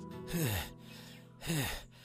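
A man's weary sigh, falling in pitch, about half a second in, then the start of a word near the end, over soft background music.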